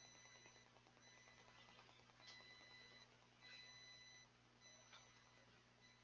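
Near silence: a faint steady electrical hum, with a faint high-pitched tone that comes and goes several times and a few soft clicks.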